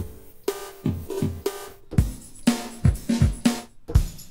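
A sampled drum-kit loop (kick, snare, hi-hats) captured from a Logic Drummer pattern, played back from Quick Sampler with Flex and Follow Tempo on so it keeps the project tempo while transposed. It plays at a higher pitch at first and drops lower about halfway through.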